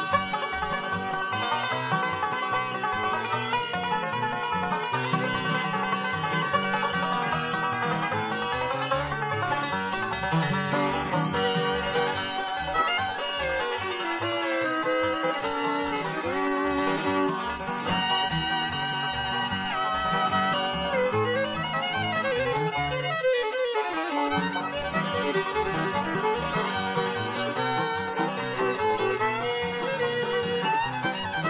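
Bluegrass band playing a banjo instrumental live: five-string banjo picking a fast lead over guitar, fiddle and an upright bass on a steady beat. Sliding fiddle notes come forward in the second half.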